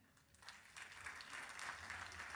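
Audience applauding faintly, starting about half a second in and building to a steady patter of many hands clapping.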